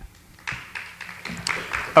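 Audience applauding in a hall, the clapping starting about half a second in.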